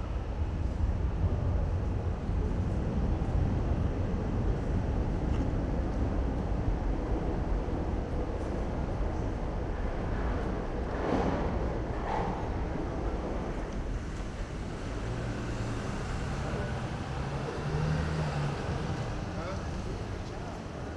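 City street noise under an elevated railway: a heavy low rumble through roughly the first fourteen seconds, with vehicles passing and people's voices.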